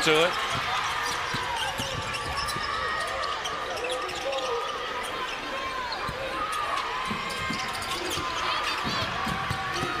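A basketball being dribbled on a hardwood court, with short knocks of the ball and repeated sneaker squeaks, over a steady background of arena noise.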